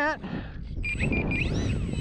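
Gusty wind rumbling on the microphone, with a quick run of three or four short high beeps about a second in and a few faint whistling glides near the end.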